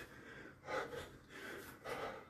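A man breathing hard through a repetitive self-striking drill, his hand slapping his own bare chest, with two louder strikes a little over a second apart.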